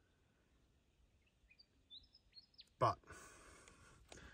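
A few faint, short bird chirps in quiet outdoor surroundings. Near the end a soft, even hiss of noise sets in.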